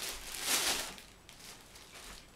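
Clear plastic bag crinkling as a bagged backpack is lifted and handled, loudest about half a second in, then fading to faint rustles.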